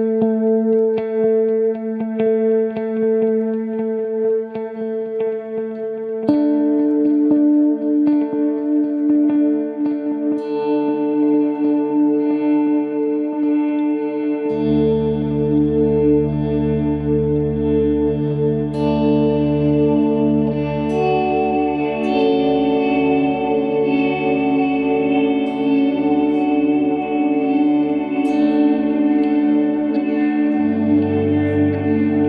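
PRS SE 277 baritone electric guitar played through four stacked delay pedals (Strymon DIG, Strymon El Capistan, EarthQuaker Devices Avalanche Run, EHX Canyon): sustained notes with long, overlapping delay repeats blending into an ambient wash. New notes come in about six seconds in, and deep low notes join about halfway.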